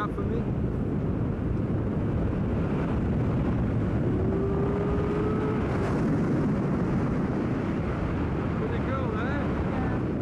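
Wind rushing over the microphone during a tandem parachute descent under an open canopy, a steady low rumble. A faint held tone sounds briefly about midway, and a little voice comes through near the end.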